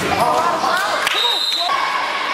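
Basketball game in a gym: a ball bouncing on the hardwood court, sneakers squeaking, and players and spectators calling out, with the echo of a large hall. A short, high squeal about halfway through.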